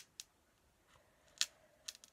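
A few faint, sharp clicks from fingers handling a paperback book with a foiled cover, the loudest about one and a half seconds in.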